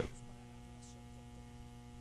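Steady electrical mains hum, a low buzz with a ladder of steady overtones, heard in a pause between spoken phrases.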